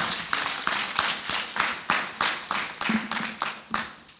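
A congregation clapping their hands, a quick run of claps several a second that dies away near the end.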